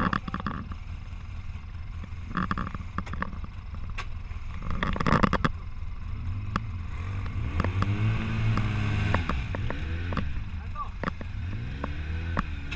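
Polaris RZR side-by-side engine revving up and down repeatedly from about halfway through, working against a tow line while stuck at the foot of a muddy riverbank. Shouted voices in the first half.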